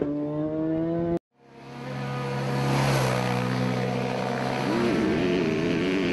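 A BMW HP4 superbike's inline-four engine pulling up through the revs, with its note slowly rising, until it cuts off abruptly about a second in. After a brief silence a steady engine-like drone fades in, and its pitch wavers near the end.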